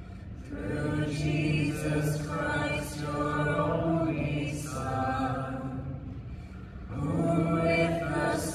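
Slow, chant-like sacred singing by voices in unison, in long held phrases with short breaths between them and a longer pause about six seconds in.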